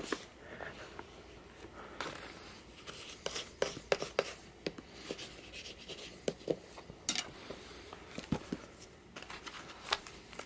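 Hands rubbing and smoothing a paper end sheet onto a hardcover book, with soft paper rustling and scattered small taps and clicks as the book is handled.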